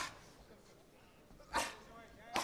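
A short, sharp, bark-like shout about one and a half seconds in, just after the tail of a similar burst at the very start, during a boxing bout.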